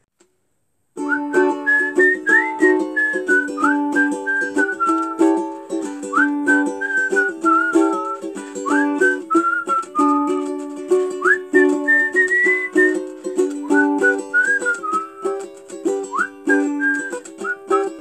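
A whistled tune over a strummed string-instrument accompaniment, starting about a second in after a brief silence. Each whistled phrase opens with a quick upward slide.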